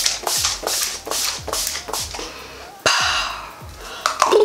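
Pump bottle of Urban Decay All Nighter makeup setting spray spritzed at the face in quick repeated sprays, about three a second, with a longer hiss about three seconds in. Background music with a steady beat runs underneath.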